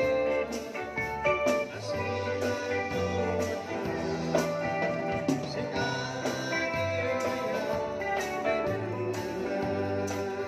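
A live band playing: electric guitar over bass and a drum kit, with a steady beat.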